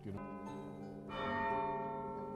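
Tower bells of an eight-bell cathedral ring rung by hand from the ringing chamber. One bell sounds just after the start and a louder one about a second in, each tone ringing on.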